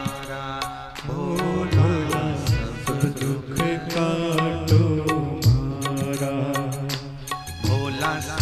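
Hindi devotional bhajan music: a sustained melody with regular drum beats.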